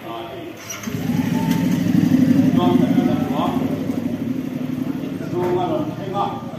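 A vehicle engine starts suddenly about a second in and runs with a loud, low pulsing, easing off near the end.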